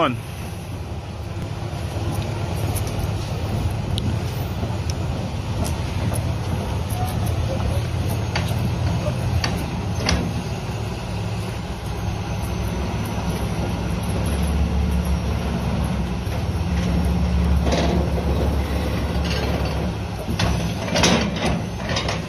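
The 6-cylinder Deere diesel of a 2007 John Deere 270D LC crawler excavator running steadily, heavier and deeper for a few seconds a little past the middle.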